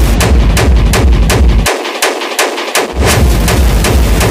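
Hard techno track with a heavy kick drum pounding a fast, even beat under sharp high percussion hits. A little before halfway the kick and bass drop out for about a second while the high percussion keeps ticking, then the kick slams back in.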